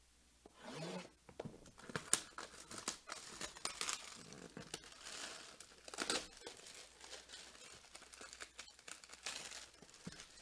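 Plastic shrink wrap being torn off a cardboard box and crumpled: an irregular run of crinkles, rips and sharp crackles.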